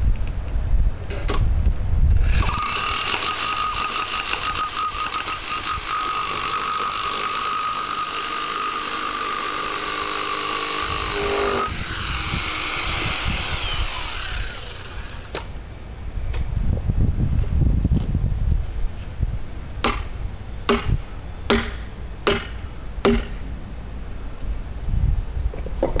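Bosch 11264EVS rotary hammer with an HS1924 ground rod driver bit, hammering half-inch rebar into the ground. It gives a rapid, steady pounding with a motor whine for about nine seconds, then the hammering stops and the motor winds down. Some seconds later come a handful of sharp clicks and knocks.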